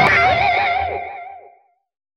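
The song's closing note on an electric guitar with effects, held with a wide, even vibrato and fading away; it dies out about a second and a half in, leaving silence.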